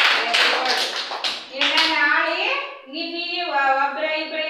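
A group clapping in applause, dying away about a second and a half in, followed by children's voices drawing out words.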